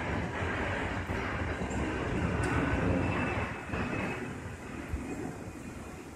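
Airplane passing overhead: a steady engine rumble that slowly fades over the last couple of seconds.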